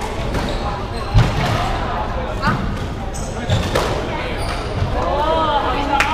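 Squash rally on a wooden-floored court: the ball is struck by rackets and hits the walls in sharp, irregular cracks, the loudest about a second in. Rubber-soled shoes squeak on the floorboards as the players move, most around the last second.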